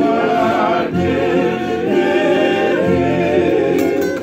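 A group of men singing a Tongan song together in harmony, with strummed acoustic guitars and ukuleles.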